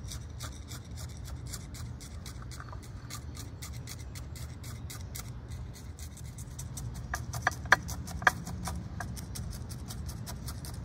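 A wooden chopstick jabbed over and over into gritty bonsai soil to work it in among the roots, the grains scratching and clicking several times a second. A few sharper clicks come about three quarters of the way through.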